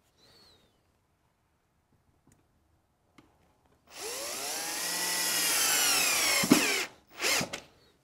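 Cordless drill driving a screw through a metal drawer slide into the wooden cabinet side: one run of about two and a half seconds, starting a few seconds in, its whine rising and then falling in pitch, growing louder, and ending with a click as it stops.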